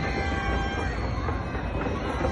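Massed fireworks going off in a continuous barrage, many bursts merging into one steady rumble with crackling on top.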